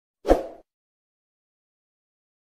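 A subscribe-button animation sound effect: one short hit with a deep thud, about a quarter second in, dying away within half a second.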